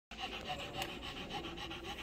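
Quick, even panting, about six breaths a second.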